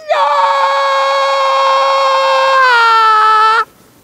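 A long, loud held scream at a steady high pitch. It steps down a little in pitch near the end and then cuts off suddenly.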